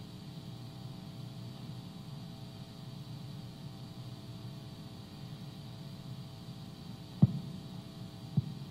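Steady low electrical hum, with a single short thump about seven seconds in.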